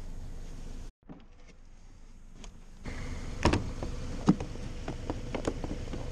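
Gloved hands handling an extension cord and its plug, with several sharp clicks and knocks over a steady rustle. Before that, the sound cuts out abruptly about a second in and only faint clicks follow.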